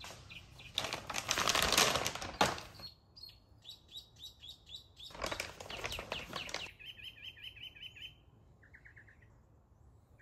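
Plastic treat bag crinkling in two bursts of a second or two each. Rapid high-pitched chirps, several a second, run under it.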